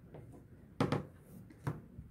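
A white plastic rolling pin rolling out sugar paste on a cutting mat, with a few sharp knocks, the loudest a little under a second in and another near the end.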